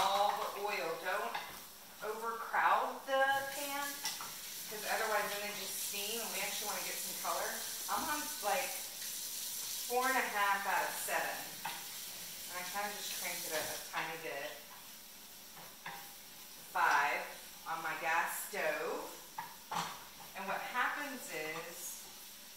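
Mushrooms sizzling in hot oil in a frying pan as they are stirred with a wooden spoon. The sizzle is strongest in the first half, with indistinct talk over it.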